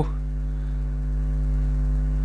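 A steady low electrical hum with several fixed pitches. It is the main sound, with no sound from the pastry handling standing out.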